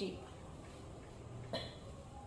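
A single brief cough about a second and a half in, over quiet room tone.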